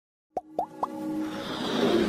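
Animated-intro sound effects: three quick popping blips, each gliding upward in pitch, then a swelling riser that builds into the intro music.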